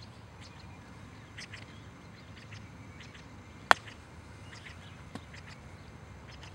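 A golf club strikes a range ball in a single sharp click a little over halfway through, the loudest sound here. Short bird chirps are heard on and off in the background.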